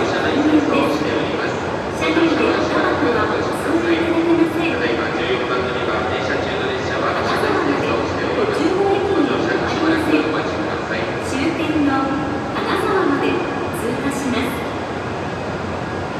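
Hokuriku Shinkansen train running into the platform, a steady noise under a platform PA announcement.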